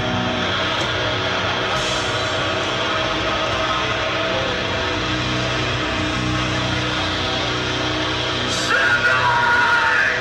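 Metalcore band playing live through a festival PA: distorted electric guitars, bass and drums, with a louder yelled voice coming in near the end.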